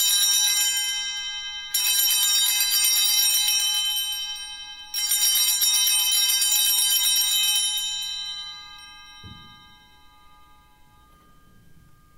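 Altar bells rung at the elevation of the chalice during the consecration: three rings, the first just before the start and the others about 2 and 5 seconds in, each bright ring fading away. The last ring dies out by about 10 seconds, with a soft thump just after 9 seconds.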